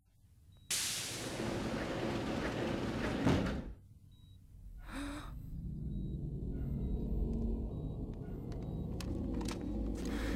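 Film sound effects: a long pneumatic hiss, like a sci-fi sliding door or capsule opening, starting suddenly about a second in and ending with a thunk, then a low machinery hum that builds, with a few clicks near the end.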